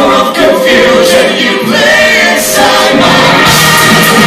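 Live rock band's layered multi-part vocal harmonies, sung almost unaccompanied with the bass and drums dropped out. The full band comes back in about three seconds in.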